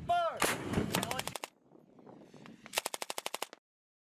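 A shouted "five", then a howitzer fires: a heavy blast with a deep rumble lasting about a second. After a cut, a short burst of rapid automatic fire, roughly a dozen shots in under a second, comes near the end.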